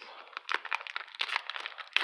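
Rapid crinkling and rustling of a hockey card pack wrapper and trading cards being handled and flipped through by hand.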